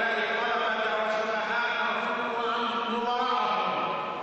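A man's voice declaiming in Arabic into a microphone with a drawn-out, chant-like intonation, holding long notes rather than speaking in short syllables.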